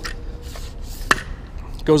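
Handling noise from an Easy Cam Post camera mount being worked in the hands, with one sharp click about a second in.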